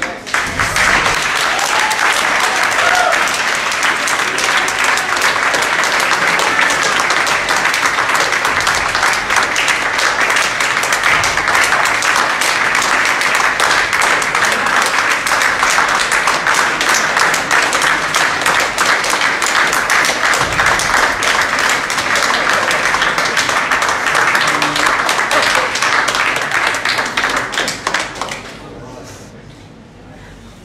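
Audience applause: dense clapping that begins suddenly, holds steady, and tails off near the end.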